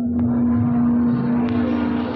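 A steady drone note of ceremonial music under a swelling wash of noise from a large crowd, with two sharp clicks.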